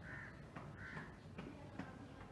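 A crow cawing twice, faintly, with a few light knocks near the end.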